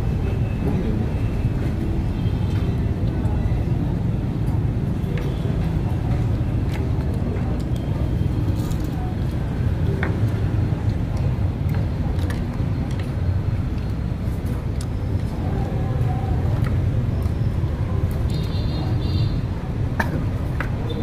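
Busy eatery background noise: a steady low rumble under indistinct voices, with a few sharp clinks of tableware.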